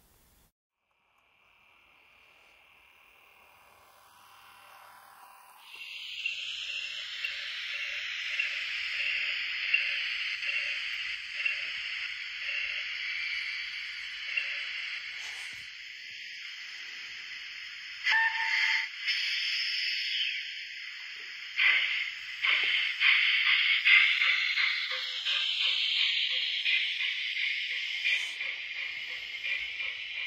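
OO gauge model train running past: a steady whine from the locomotive's motor and gearing, with the wheels clicking regularly over the rail joints. The sound rises in pitch as it comes in about six seconds in and falls away near the end, with a few sharper clicks from the wagons in the second half.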